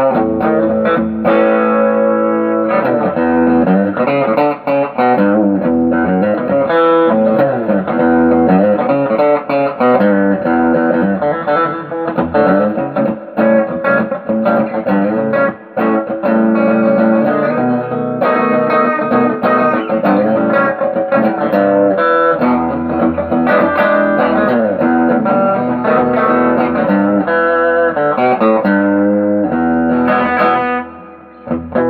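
Electric guitar, a modified Squier Affinity Telecaster with Texas Special single-coil pickups, played on its bridge pickup alone: a continuous run of single-note lead lines and chords with several string bends.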